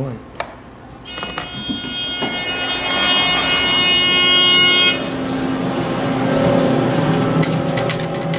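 A key switch clicks, then the elevator's fire-service alarm buzzer sounds, signalling that Phase 1 fire recall has been switched on. It is a loud, high buzzing tone that starts about a second in and stops abruptly some four seconds later, giving way to a lower, quieter tone.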